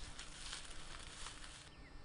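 Faint rustling of dry leaf litter as a large tortoise walks over it. Near the end the sound gives way to a quieter outdoor background with a bird's short falling chirp.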